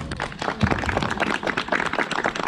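Audience applauding at the end of a solo guitar piece: many hands clapping irregularly.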